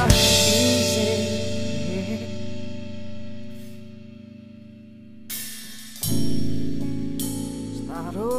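Pop-rock song with a live acoustic drum kit playing along: a busy drum fill ends with a crash, and the music rings on and fades low for a few seconds. About five seconds in a cymbal is struck, and a second later the full band and drums come back in.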